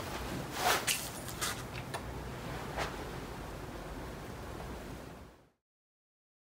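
Quiet room noise with a few soft clicks and rustles in the first three seconds, then the sound cuts off to dead silence near the end.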